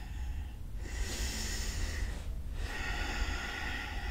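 A woman breathing audibly, two long, even breaths.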